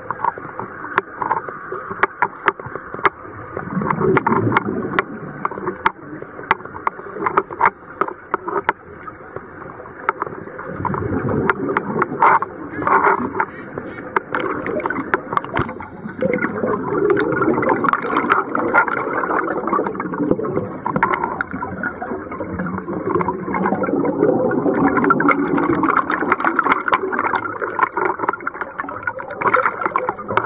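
Underwater sound of scuba divers' exhaled bubbles, rumbling and gurgling in irregular bursts, with many sharp clicks and crackles scattered throughout.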